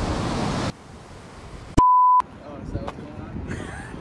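Rush of breaking surf that cuts off abruptly in the first second. About two seconds in, a single steady high-pitched censor bleep lasts less than half a second.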